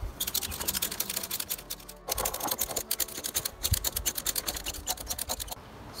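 Ratchet strap being cranked to hoist a heavy wooden beam, its pawl clicking rapidly and evenly in two long runs, with a short break about two seconds in and a stop just before the end.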